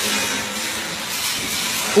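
Steady hissing background noise with a faint low hum underneath.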